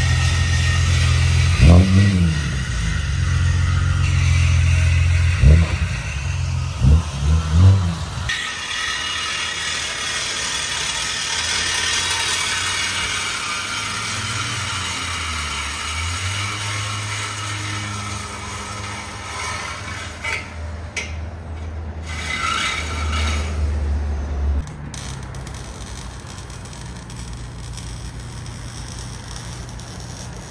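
A BMW 3 Series sedan's engine running and revved four times in quick succession through its twin exhausts. Then exhaust-shop work under a car on a lift, with a steady low hum and the hiss and scrape of tools.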